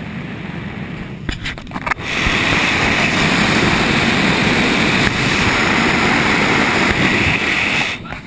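Steady rush of airflow in a sailplane in flight, with a few knocks about a second and a half in. From about two seconds in, a much louder wind rush with a hiss, as the microphone is in the slipstream outside the canopy, cutting off suddenly near the end.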